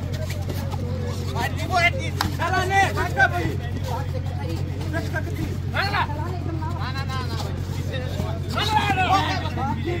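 Voices of players and spectators calling out and shouting during a kabaddi raid, over a steady low hum.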